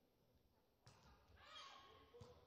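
Faint indoor volleyball sounds: one sharp hit of the ball on the serve about a second in, then squeaks of players' shoes on the court floor.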